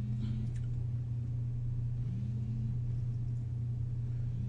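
A steady low hum with faint background hiss.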